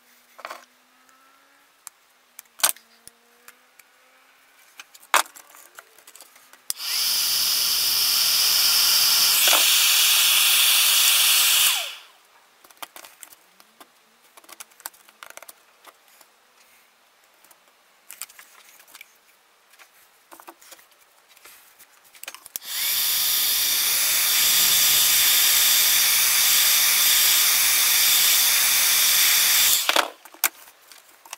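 A 2000 W electric heat gun blowing, switched on twice: a steady hiss of rushing air with a fan whine, about five seconds the first time and about seven seconds the second. Between the runs there are light clicks and taps of hands handling the ABS plastic sheet and tools on the bench.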